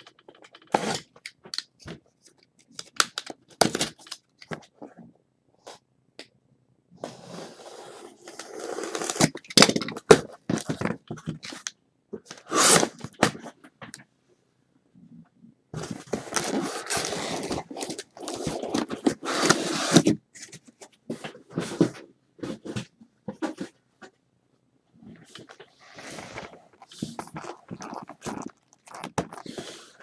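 Hands opening a sealed box of trading cards: plastic wrap crinkling and tearing and cardboard scraping, in two longer stretches with scattered taps and clicks between.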